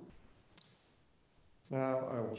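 A held musical chord dies away at the start, leaving quiet room tone; a single sharp click sounds about half a second in, and a man's voice starts speaking near the end.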